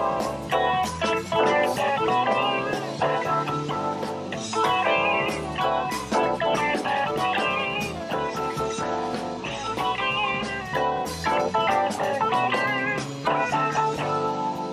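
Live rock band playing a guitar-led, blues-flavoured number with drums, from an analog tape of a 1970s radio broadcast.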